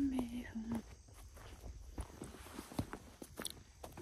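A woman's short hummed voice in the first second, then footsteps on a dirt and grass path: soft, uneven steps about two a second.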